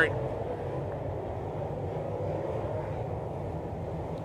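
Dirt late model race cars' V8 engines running on the track, a steady low drone.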